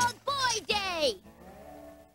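A cartoon character's voice calling out a drawn-out, sing-song exclamation in about three long syllables with swooping pitch. A fainter low held tone follows in the second half.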